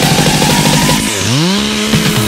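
Two-stroke chainsaw running under electronic music with a steady beat. About halfway through, a pitch dips and then climbs to a steady high note, as in a revving saw.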